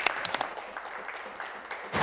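Applause from the members of a legislative chamber: a few sharp claps at the start, then steady clapping that slowly dies down.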